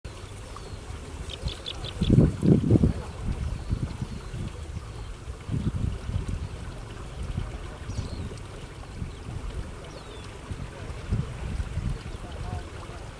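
A quick run of four short high chirps about a second and a half in, typical of nestlings begging, with a few fainter high calls later. Underneath is a steady low rumble with louder irregular thumps around two to three seconds in.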